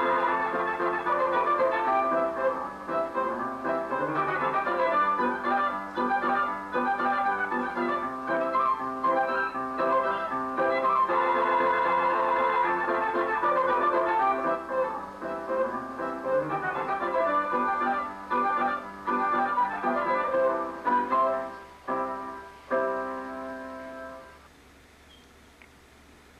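Hupfeld Phonoliszt-Violina playing a roll: three real violins sounded by a rotating horsehair bow, with piano accompaniment. Near the end the piece closes with a few short chords and dies away.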